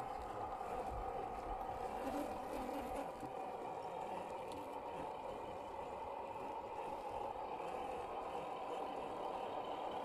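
A 1/10-scale RC Toyota Land Cruiser crawler's electric motor and gearbox whining steadily as it drives slowly over soft mud.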